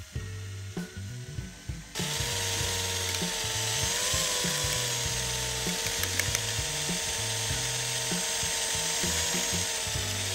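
Cordless drill starting about two seconds in and running at a steady speed, spinning a thin mixing rod in a plastic cup of liquid. The motor gives a steady whine that rises slightly in pitch about four seconds in.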